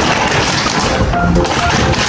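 Background music, a children's song, playing steadily with no speech over it.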